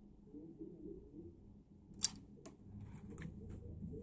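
MacBook logic-board cooling fan whirring faintly as it winds down after the system is switched off. A sharp click about two seconds in, followed by a few lighter ticks.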